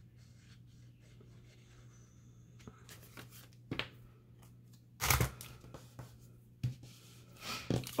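Paper and cardstock being handled: a few short rustles and crackles, the loudest about halfway through, as a glued envelope booklet is pressed and folded by hand. A faint low hum runs underneath.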